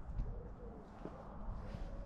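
A pigeon cooing faintly, a couple of soft low coos.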